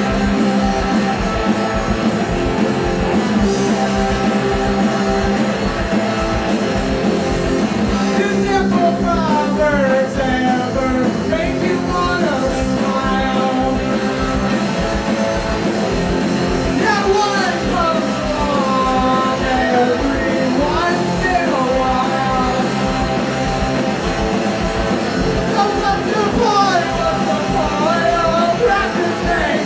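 Rock band playing live and loud: electric guitars and drums start together straight off a count-in, and a male voice starts singing about eight seconds in, the singing recurring in phrases over the band.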